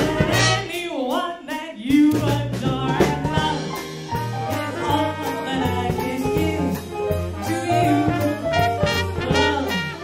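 Live swing jazz band playing: a woman sings into a microphone over trumpet and other horns, upright bass, piano and drums.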